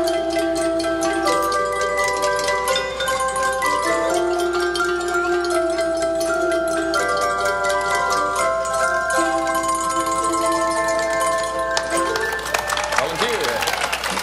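Antique Deagan organ chimes, an instrument modelled on the Indonesian angklung, playing a tune in held chords that change every second or so over a light rattle. Near the end the chimes stop and crowd voices and cheering take over.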